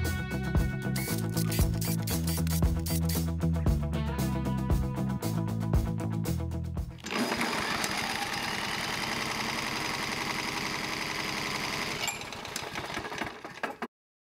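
Background music with a steady beat. About halfway through it cuts to a rapid, steady mechanical clatter from a small single-cylinder lawn mower engine fitted with a compression gauge, which fades near the end.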